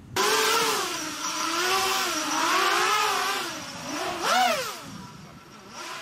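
FPV strike quadcopter flying past, its electric motors whining in a pitch that weaves up and down with the throttle. About four seconds in, the pitch swoops sharply up and back down, and then the sound fades.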